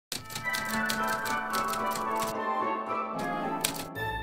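Short intro music with typewriter key-click sound effects, about four clicks a second for the first two seconds, then a last couple of clicks near the end.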